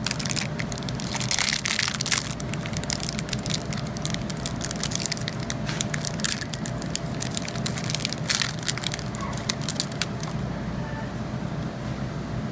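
Foil wrapper of a baseball card pack crinkling and tearing open by hand: a dense run of crackles, loudest in the first two seconds and again about eight seconds in.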